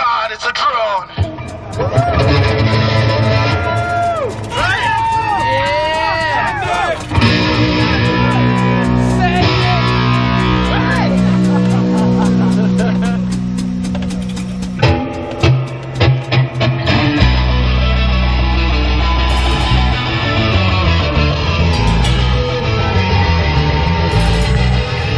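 Live rock band playing on electric guitars, bass and a drum kit, with gliding notes over the opening and the low end filling in heavily about seven seconds in.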